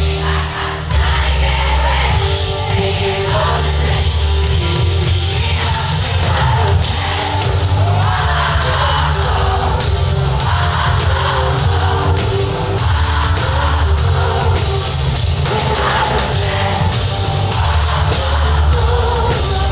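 Loud, steady rock-style band music with a singing voice.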